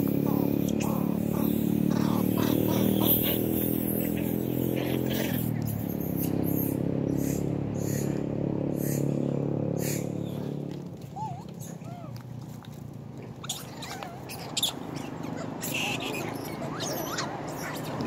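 A motor engine running steadily, which fades out about ten seconds in and leaves quieter outdoor sound. Scattered clicks and a few short squeaks come through, and a vehicle draws near at the end.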